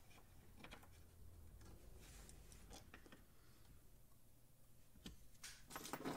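Near silence, with a few faint scattered clicks as small Torx screws and a screwdriver are handled on a plastic dashboard.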